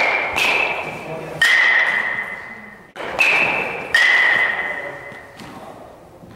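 Metal baseball bat hitting pitched balls: each contact is a sharp crack followed by a high ringing ping that fades over about a second, several hits in a row, the strongest about a second and a half and about four seconds in.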